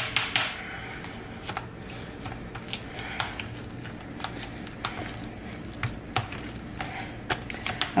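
Plastic potato masher mashing avocado in a clear plastic bowl: irregular clicks and taps, several a second, as the masher head knocks and scrapes against the bowl through the soft mash.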